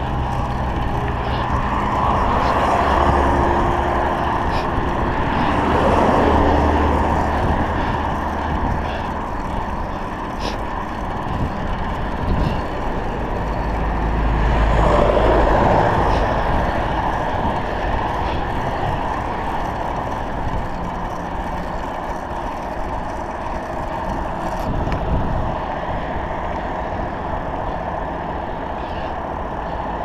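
Road traffic passing close to a moving bicycle: motor vehicles, among them a minibus and a bus, go by in swells of engine and tyre noise, the loudest about fifteen seconds in, over a steady low rush of wind on the handlebar-mounted GoPro's microphone.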